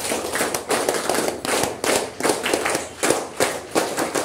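Sharp claps in a quick, uneven series, several a second, like a few people clapping by hand.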